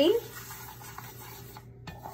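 Sesame seeds being stirred in a dry saucepan as they dry-roast: a faint, steady scraping and rustling, with a couple of light ticks.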